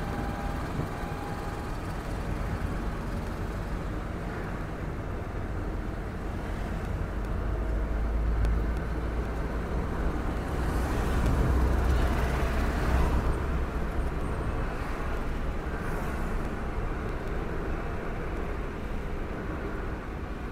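Road noise inside a moving car's cabin: a steady low rumble of tyres and engine, growing louder for a few seconds around the middle.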